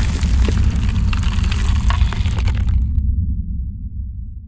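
Cinematic logo-reveal sound effect: a deep rumbling boom with crackling, crumbling debris. The crackle stops abruptly about three seconds in and the low rumble fades away.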